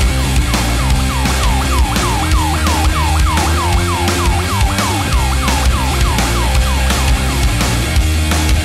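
Heavy stoner-rock song with a driving bass and drum groove, under a repeated falling, siren-like swoop that comes about four times a second and stops near the end.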